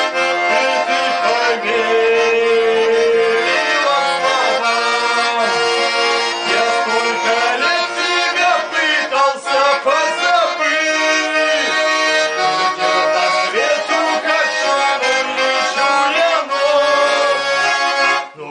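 Russian garmon (button accordion) playing an instrumental passage of a folk-style song, melody over sustained chords, with no singing. The playing is loud and continuous and drops away sharply at the very end.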